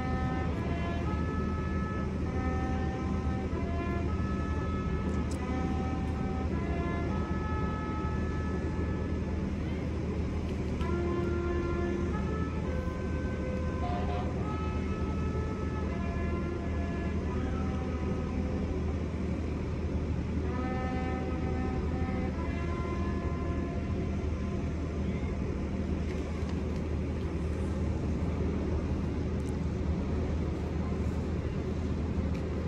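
A brass band playing a slow melody of long held notes, which stops near the end, over a steady low rumble.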